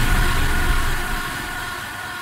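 Closing chord of an electro house track dying away: a sustained synth chord over a fading bass tail, getting steadily quieter as the mix fades out.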